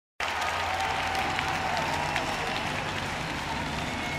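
Large concert audience applauding, a dense steady clatter of clapping that starts abruptly, with a few faint high calls above it.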